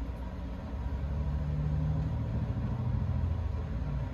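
A low, steady engine-like rumble that swells about a second in and eases off near the end.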